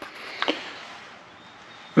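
A single short click about half a second in, then faint room hiss.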